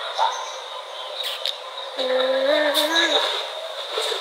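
A woman's voice giving a short hum about halfway through, over a steady hiss and a faint, thin high whine.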